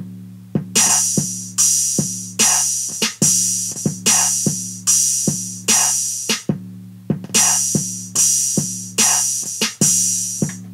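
Programmed hip-hop drum loop playing back from Akai MPC Renaissance software at 148 BPM. A loud bright hit lands about every 0.8 s, on every second beat, with smaller sharp drum hits between, all over a steady low bass tone.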